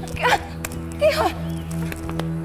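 A dog barking twice, a short loud bark near the start and another about a second later, over steady background music.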